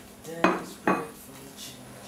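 Two short clinks of tableware, dishes and cutlery, about half a second apart, the first about half a second in.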